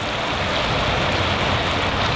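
Melted butter with seasoning and a lemon slice bubbling and sizzling in a small cast-iron pan on a camp stove: a steady hiss.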